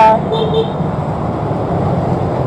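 Street traffic with a steady low rumble, heard from a moving bicycle. A short double toot of a vehicle horn comes about half a second in.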